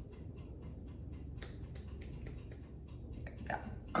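Scattered light clicks and taps of metal salad tongs handled against dishware, over a steady low room hum.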